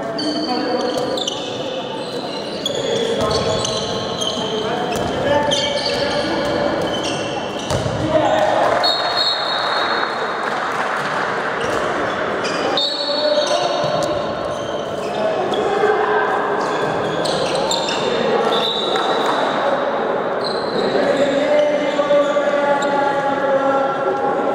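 Handball match in a reverberant sports hall: the ball bouncing on the court floor, sneakers squeaking in short high bursts, and players calling out to each other.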